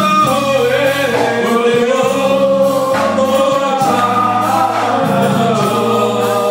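Church congregation singing a gospel song together, many voices holding long notes.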